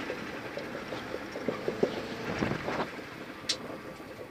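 Rally car engine and road noise heard from inside the cabin, off the power as the car brakes for a hairpin, with a few faint knocks.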